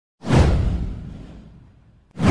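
Whoosh sound effect of an animated logo intro, with a deep boom beneath it. It comes in sharply a moment in, falls in pitch and fades out over about a second and a half.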